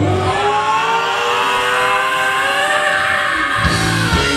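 Live rock band in a break: the drums and bass drop out just after the start, leaving one long sustained note that slides slowly up and down in pitch, and the full band comes back in near the end.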